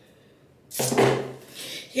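A loud whoosh starting sharply about three quarters of a second in and fading within about a second.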